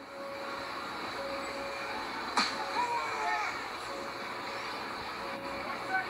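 Faint, steady crowd noise and faraway voices from a live wrestling broadcast playing on a TV in the room. A single sharp click comes about two and a half seconds in.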